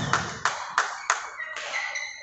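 Rhythmic clapping, about three claps a second, fading out a little after a second in, then a short high squeak of a shoe sole on the court floor near the end.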